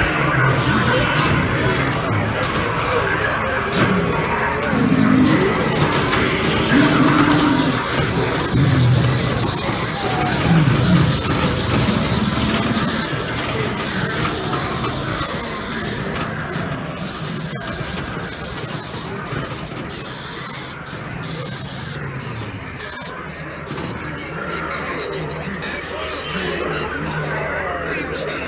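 Many Halloween animatronics running at once, their recorded voices, music and sound effects overlapping in a dense jumble. It grows somewhat quieter over the second half.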